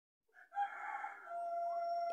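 A bird's long call, starting about half a second in with short rising notes and then held on one steady pitch for over a second.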